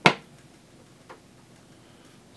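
A single sharp click, then a much fainter click about a second later.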